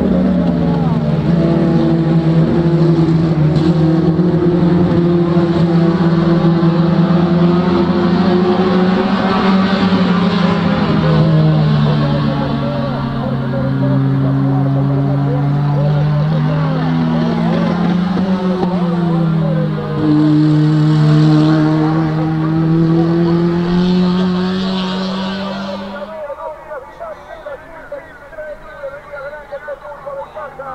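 Several racing touring cars' engines running hard together, their overlapping notes rising and dipping as the cars change gear and pass. The engine sound drops off suddenly about 26 seconds in, leaving quieter talk.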